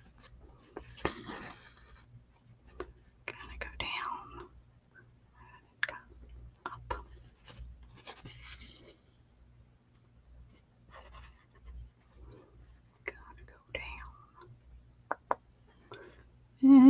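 Faint hand-stitching sounds: fabric handled and thread drawn through cloth in several short soft swishes, with scattered small clicks of the needle.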